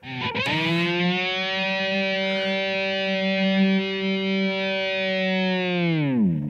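Distorted electric guitar's open G (third) string, played through a Line 6 POD X3 Live. It rises out of a tremolo-bar dive to its natural pitch in the first second, then holds as a long steady note. Right at the end the bar begins to push it down again.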